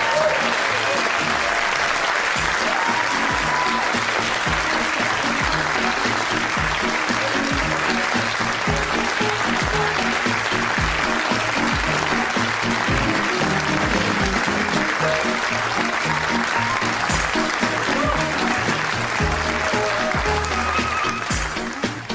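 Studio audience applauding over the show's closing theme music.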